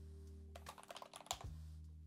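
Faint computer keyboard typing: a handful of scattered keystrokes, clustered around the middle, over a quiet steady low tone.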